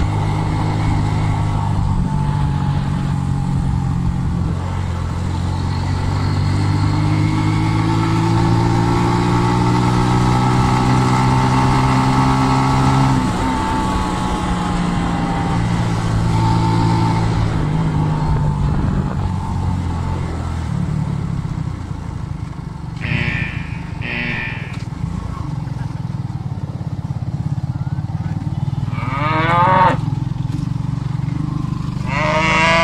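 Small motorcycle engine running under way, heard from the bike itself, its pitch climbing steadily for several seconds and then falling away about halfway through as the throttle eases. Near the end two short high-pitched bursts, then cattle lowing once.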